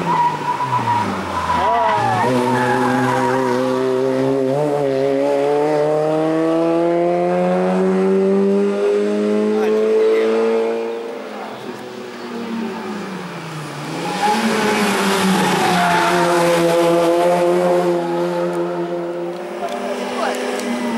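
Hill-climb race car's engine pulling hard up through the gears: its pitch climbs in long pulls and drops sharply at each upshift, about two and five seconds in. Past the middle the pitch falls as the car slows for a bend, then the engine pulls hard again near the end.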